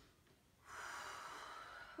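A woman's audible breath during exercise: a rush of air lasting a little over a second, starting just over half a second in.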